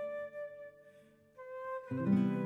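Slow, calm instrumental meditation music led by a flute: a held flute note fades away about a second in, a new flute note starts, and fuller low accompaniment comes in near the end.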